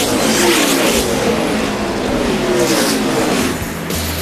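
NASCAR Cup stock cars' V8 engines at full throttle, passing close one after another, each engine note sliding in pitch as the car goes by.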